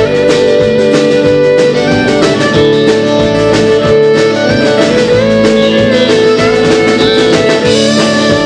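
Live country band playing an instrumental passage: a fiddle carries the melody over a strummed acoustic guitar, with a steady beat.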